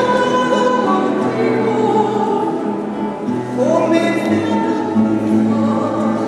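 Voices singing a Spanish church hymn, the entrance hymn of a Mass, accompanied by guitar and laúd. The singing holds long notes, with a rise in pitch about halfway through.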